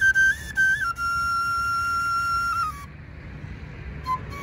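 Bansri flute playing a few quick stepping high notes, then one long held note that dips slightly and stops about three seconds in.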